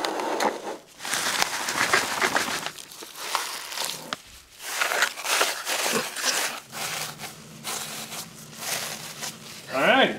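Crunching and rustling of loose granular incubation substrate in a plastic tub as a macaw's feet scratch and stir it, coming in irregular surges.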